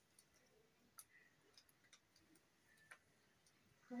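Near silence, with a few faint clicks of paper being folded and creased by hand, the clearest about a second in and another near the end.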